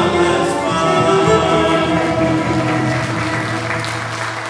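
A Pontic Greek folk ensemble of lyras, violins and ouds plays the closing held notes of a song with voice, and applause starts to come in near the end.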